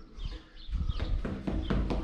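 Quick, irregular footfalls of sneakers tapping on a concrete floor during a ladder agility drill. They start about a second in after a brief lull, with a low steady hum underneath.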